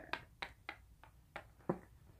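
A handful of faint, brief taps and clicks, about five spread unevenly over two seconds, as a game piece is moved over a cardboard game board.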